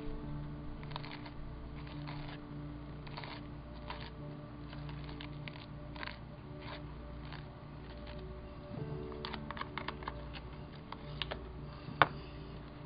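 Irregular scraping and tapping of a plastic spatula spreading modeling paste through a stencil on a paper page, busiest near the end, over soft background music.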